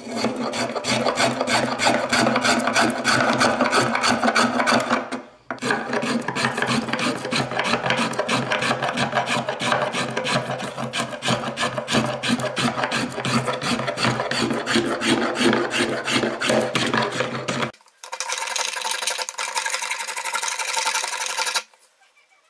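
Small brass finger plane shaving a flamed maple violin plate in quick, short, scratchy strokes, the wood curling off in shavings as the arch is carved. The strokes run on with two brief breaks, about five seconds in and near the end.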